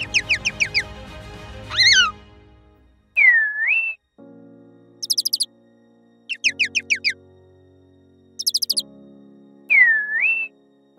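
Bird chirps in quick runs of five or six falling notes, and twice a whistle that swoops down and back up, voicing a cartoon chickadee whose thanks are shown as text. Soft sustained music chords sound underneath.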